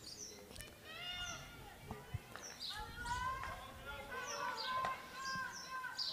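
Faint open-air sound of a field hockey game: players calling out to each other on the pitch, with small birds chirping in short, high, falling notes.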